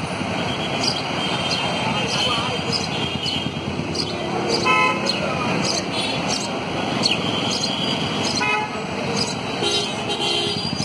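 Slow road traffic of cars and motorbikes, with short car-horn toots, two clear ones about four and a half and eight and a half seconds in.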